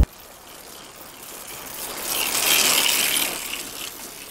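A bunch of road cyclists passing close by: the whir of tyres and chains with the ticking of freewheels, swelling to a peak about two and a half seconds in and then fading.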